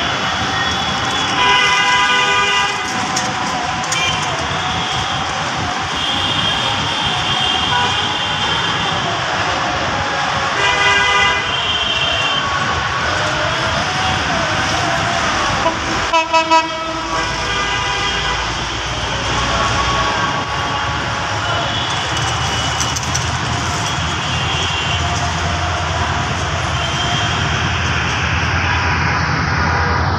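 Diesel locomotive horn sounding in several long blasts as a passenger train approaches, over steady background noise. The locomotive's low engine rumble grows louder in the second half as the train nears.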